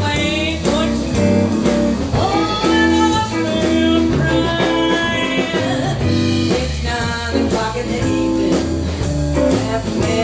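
Live blues band playing a shuffle: electric guitar, bass and drums with a steady beat, and a woman singing over it in long, bending held notes.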